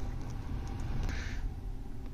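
Tesla Model Y cabin climate blower running on high, a steady rush of air through the vents.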